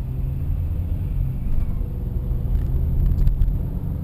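Steady low rumble of a car's engine and road noise heard from inside the cabin while driving, with a few faint clicks near the end.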